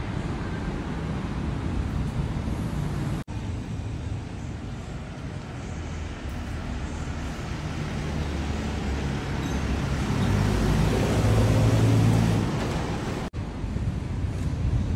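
Road traffic running steadily, swelling as a vehicle with a low engine hum passes about three-quarters of the way in.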